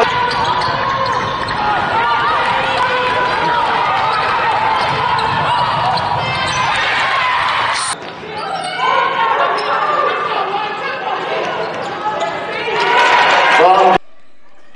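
Basketball game audio: a ball dribbling and players' voices calling out on court. About eight seconds in the sound cuts off briefly and picks up again with a different mix.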